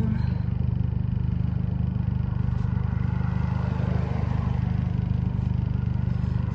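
Steady low drone of a car's engine and road noise heard inside the cabin.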